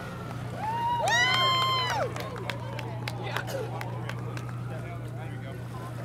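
A person's high-pitched scream, about a second long and starting about a second in, from the shock of plunging into icy pond water, with shorter cries just before it.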